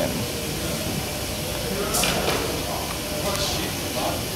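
A steady background hiss, with faint speech-like sounds about two and three and a half seconds in and one short sharp sound about two seconds in.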